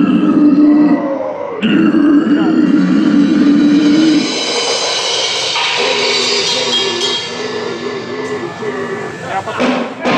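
Death-metal vocalist's guttural growls through a live PA: two long held growls, the second cutting off about four seconds in, followed by a quieter stretch of held, shifting instrument notes.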